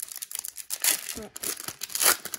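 Foil wrapper of an Upper Deck 2019-20 Series One hockey card pack being torn open and crinkled by hand, in an irregular run of crackling bursts that is loudest a little before one second in.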